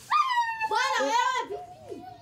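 A high-pitched whining cry from a young child: it rises sharply at the start, then wavers unsteadily for over a second before trailing off.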